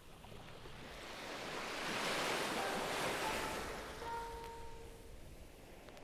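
A surf-like swell of noise in a vinyl DJ mix, rising to a peak about two to three seconds in and then fading away, with a few faint held tones under it.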